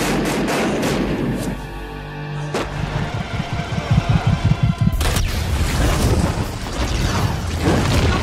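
Movie gunfire over a dramatic music score: sharp shots, then a sudden loud blast about five seconds in.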